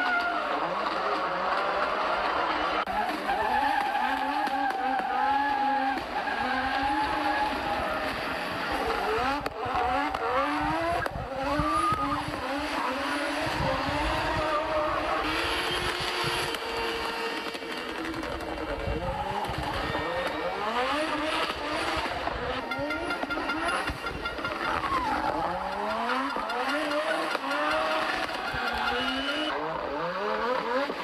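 Audi Sport Quattro rally car's turbocharged inline-five engine revving hard, its pitch climbing and dropping again and again through gear changes as it accelerates past.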